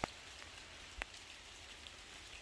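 Light rain falling: a faint, steady hiss with two louder drips, one right at the start and another about a second in.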